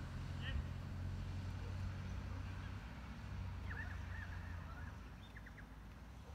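Outdoor ambience: a low, steady rumble with a few short bird calls scattered through, a small cluster of chirps about two-thirds of the way in.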